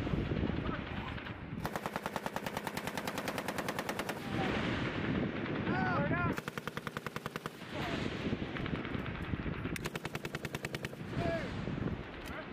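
M249 light machine gun firing 5.56 mm rounds in three bursts of automatic fire, the first about two and a half seconds long and the next two just over a second each, each burst a rapid, even string of shots.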